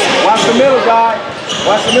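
Several voices of players and spectators calling out in a large gym hall, with a basketball bouncing on the hardwood court.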